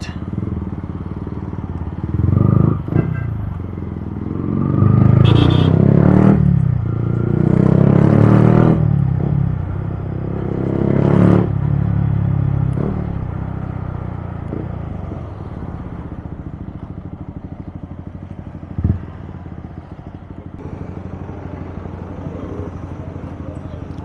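Yamaha MT-15's single-cylinder engine heard from the rider's seat, revving up and easing off in several swells while riding, then running quieter and steady through the second half, with one short knock about three-quarters of the way in.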